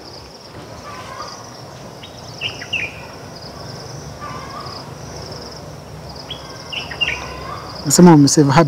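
Outdoor ambience: a steady high insect drone with a few short bird chirps, a pair about two and a half seconds in and a few more near the end.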